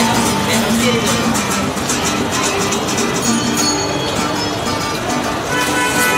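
Steel-string acoustic guitar strummed rhythmically, unamplified, with held chords ringing out in the second half.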